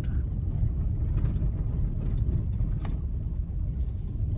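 A vehicle driving slowly on a gravel road, heard from inside the cab: a steady low rumble of engine and tyres on gravel, with a couple of faint clicks.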